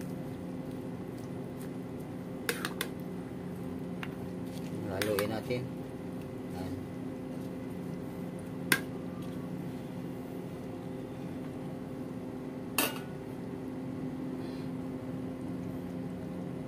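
A metal spoon stirring chicken and vegetables in an aluminium pot, with sharp clinks of the spoon against the pot: three quick ones a couple of seconds in, another near the middle and one more near the end. A steady low hum runs underneath.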